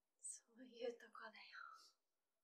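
A single quiet spoken line of dialogue, soft and close to a whisper, starting with a hiss.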